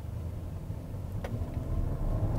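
In-cabin sound of a Bentley Bentayga's twin-turbo W12 engine and tyres while driving: a steady low rumble that builds slightly near the end as the throttle is pressed. A single light click about a second in.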